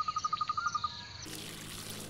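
An insect chirping in a rapid, evenly pulsed trill of about ten pulses a second over a steady high whine, which stops about a second in. A quiet steady background with a low hum follows.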